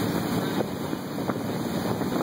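Tow boat's motor running steadily under way, with wind buffeting the microphone and water rushing past.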